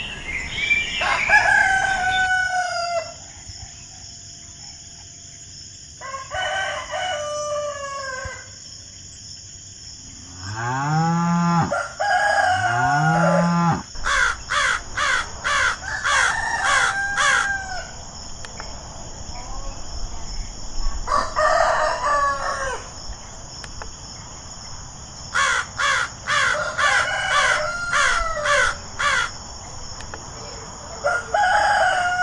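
Farmyard ambience: a rooster crowing several times, the loudest two long rising-then-falling crows near the middle, with hens clucking and small birds chirping in quick bouts, over a steady high hiss.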